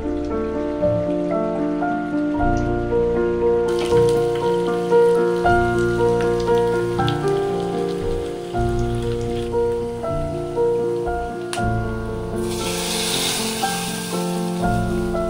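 Background music with long held notes over the sizzle of garlic and green chilli frying in oil in a small tempering pan. Near the end the sizzle grows much louder as the hot tempering is poured into the curry.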